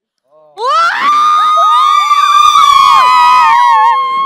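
A crowd of children cheering and shouting together, many high voices rising together about half a second in and held for about three seconds before tailing off.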